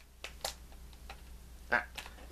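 A few light clicks of a metal steelbook case being handled while it is pressed shut; it is tight and hard to close.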